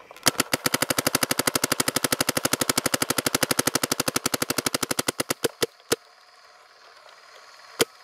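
Empire Axe electronic paintball marker firing a rapid, even string of shots at about twelve a second for about five seconds, in PSP ramping mode capped at 12.5 balls per second. Then three spaced single shots follow, the last near the end.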